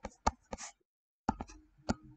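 Stylus tip tapping and scratching on a tablet screen while writing by hand: a run of sharp clicks with a brief scrape about half a second in, a short pause, then more clicks.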